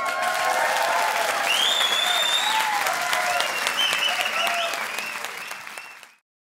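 Studio audience applauding and cheering, with high whoops rising above the clapping, right after a song ends; the applause fades near the end.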